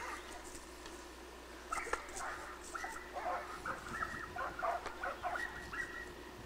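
An animal's short, high-pitched calls, repeated several times a second from about two seconds in.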